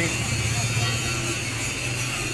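A steady low motor hum with a faint, even high whine above it, fading slightly over the two seconds.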